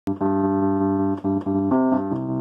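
Distorted Mark II electric piano, layered with choir, holding sustained chords. The chord is re-struck twice in quick succession a little over a second in, then moves to a new chord near the end.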